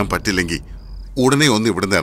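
A man's voice in two short phrases with a pause near the middle; during the pause a brief, thin, high-pitched chirp sounds.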